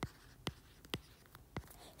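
A stylus tapping and sliding on a tablet screen as digits are handwritten, giving about five faint, short clicks.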